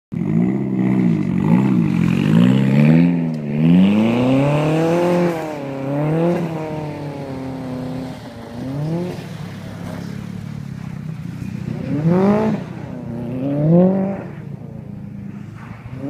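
Mitsubishi Lancer Evolution X's turbocharged 2.0-litre four-cylinder revving up and down again and again as the car slides through donuts on snow. The pitch rises and falls in waves, with two sharp rev climbs about three-quarters of the way through.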